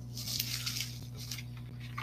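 Rustling and crinkling of packaging in a cardboard box as items are handled and lifted out, with a few light clicks, mostly in the first second. A steady low hum runs underneath.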